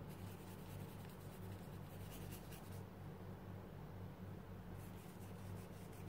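Faint scratchy strokes of a paintbrush working acrylic paint over a crinkled tissue-paper surface, with a pause of about two seconds in the middle, over a low steady hum.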